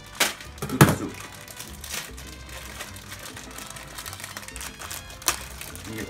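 A plastic soup packet being handled and crinkled, with a few sharp clicks or knocks, the loudest about a second in, over quiet background music.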